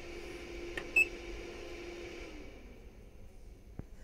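Bench DC power supply giving one short, high beep about a second in as its controls are worked, over a faint steady hum that fades out a little after two seconds; a small click near the end.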